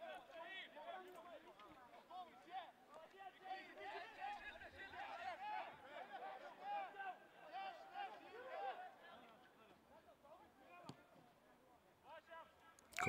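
Faint, distant voices on a rugby pitch: players shouting and calling during a ruck, dying away over the last few seconds. A single sharp click is heard near the end.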